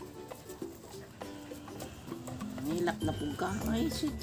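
Background music with steady held notes, and a person's voice coming in near the end.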